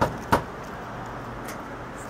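Two sharp knocks on a locked door in quick succession, then a fainter tap about a second and a half later, over a steady low outdoor background noise.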